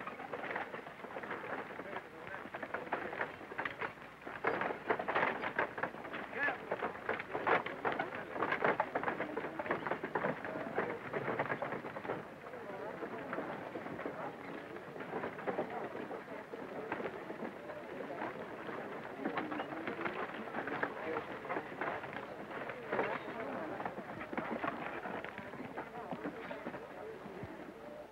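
A horse-drawn wagon train on the move: many horses' hooves and wooden wagons clattering over rough ground in a dense, unbroken rattle of knocks.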